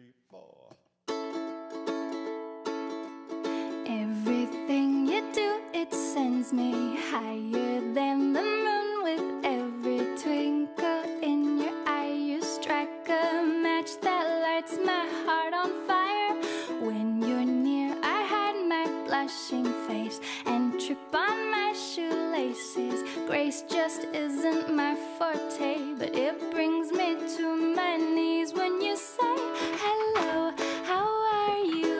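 Background music starting about a second in: a light song with plucked strings under a sung melody.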